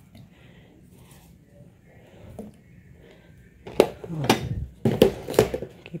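Quiet at first, then in the last two seconds about four sharp knocks and clicks of kitchenware, from a large aluminium pot and its lid being handled on a gas stove.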